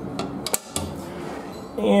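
Chrome paddle latch on a metal storage compartment door clicking as it is worked, with a few sharp metallic clicks in the first half second.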